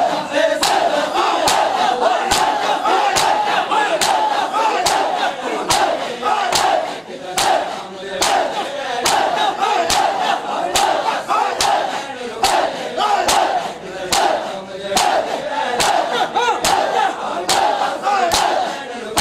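Crowd of male mourners chanting a noha together, over a steady rhythm of sharp strikes, a little more than one a second: hands beating on chests in matam.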